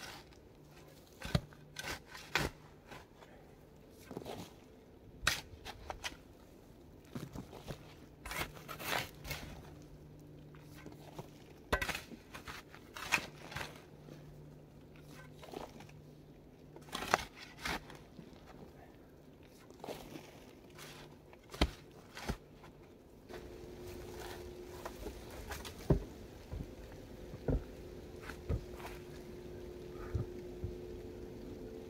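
A shovel digging into loose, needle-covered forest soil: irregular crunches and scrapes of the blade going in and earth being lifted, one every second or two. A faint steady hum runs underneath.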